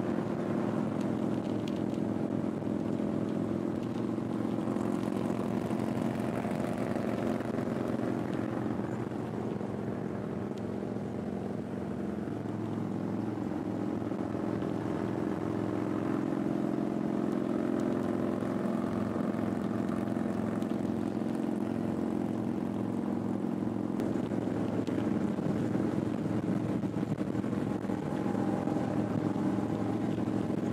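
Harley-Davidson Electra Glide Standard's Milwaukee-Eight V-twin engine running steadily at highway cruising speed, heard from on the bike.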